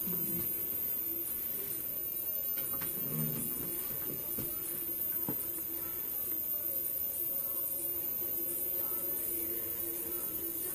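Quiet room tone: a steady low hum with a few faint clicks.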